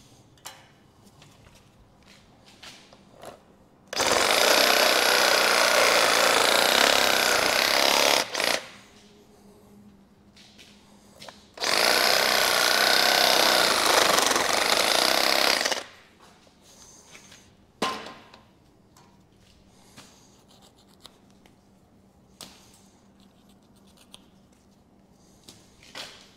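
Cordless reciprocating saw (Sawzall) cutting through a whitetail deer's leg, run in two bursts of about four seconds each with a pause between. Faint clicks and handling sounds come in the quiet stretches.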